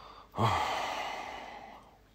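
A man's short "oh" that trails off into a long breathy sigh, fading away over about a second and a half.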